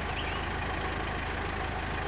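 A vehicle engine idling steadily: a low, even rumble with a fast regular pulse.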